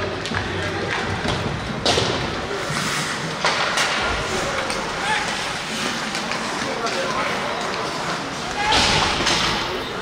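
Ice hockey game sound from the rink: skates scraping on the ice and occasional sharp knocks of sticks, puck or boards, a few seconds apart, over steady arena crowd noise and voices.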